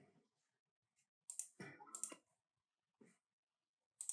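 Near silence, broken by a few faint clicks between about one and two seconds in and one more near three seconds.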